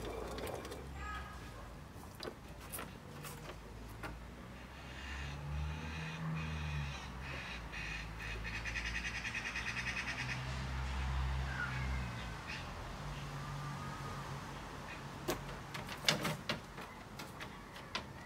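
A crow-like bird calling in a rapid, evenly repeated series of notes for about five seconds in the middle, over a steady low rumble; a few sharp clicks near the end.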